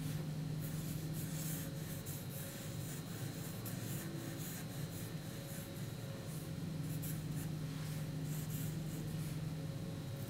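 Sharpie permanent marker drawing on paper in many short, irregular strokes, over a steady low hum.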